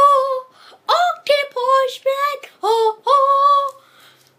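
A high voice singing unaccompanied: a string of about six short, held notes with brief breaks between them.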